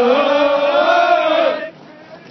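A platoon of soldiers chanting a military marching cadence in unison, repeating the caller's line back to him; the group chant stops near the end.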